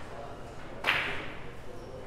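Three-cushion billiards shot: a single sharp click of the cue striking the cue ball a little under a second in, trailing off briefly.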